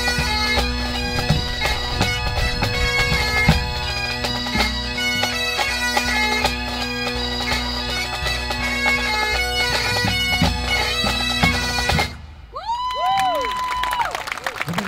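A grade 2 pipe band of Highland bagpipes with snare and bass drums plays the close of its march, strathspey and reel set. The band stops together about twelve seconds in. Then the drones and chanters sag downward in pitch and die away as the bags empty.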